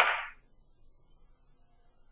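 A billiard cue striking the cue ball in a three-cushion carom shot: one sharp click at the very start, ringing out within half a second.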